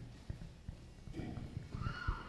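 Footsteps of a woman walking while carrying a handheld microphone, heard as a series of irregular low thumps.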